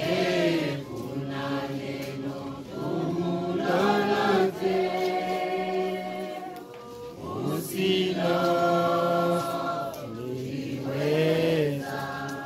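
A group of voices singing a slow hymn together, holding long notes in phrases of about three to four seconds with short breaks between them.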